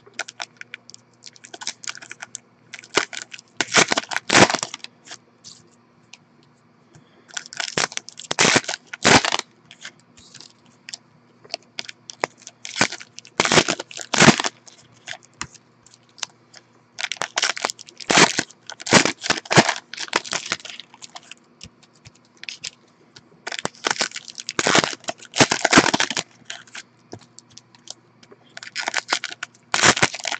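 Trading-card pack wrappers being torn open and crinkled by hand, in crackly bursts of a second or two, about every four to five seconds.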